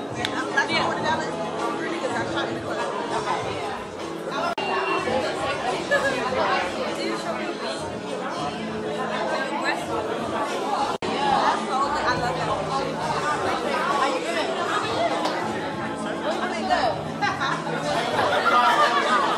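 Many voices talking at once over background music, the babble of a busy room, with a brief break about eleven seconds in.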